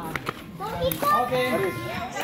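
Children's voices chattering and calling out during a game, with a couple of short sharp taps near the start.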